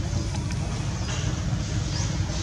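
Steady low rumbling noise with a faint hiss above it.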